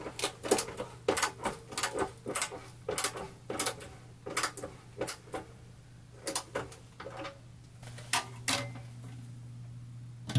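Hand screwdriver on a universal-joint extension tightening the screw of a sink mounting clip under a stainless steel sink, clicking sharply about two to three times a second and stopping shortly before the end.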